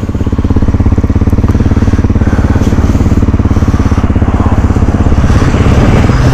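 Single-cylinder engine of a Honda dual-sport motorcycle, heard close from the rider's position, running with a steady fast pulse while stopped at idle, then pulling away as the bike moves off near the end.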